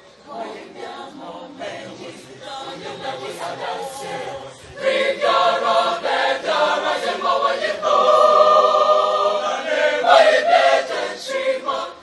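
A large school choir singing together, softer for the first few seconds and then swelling much louder about five seconds in.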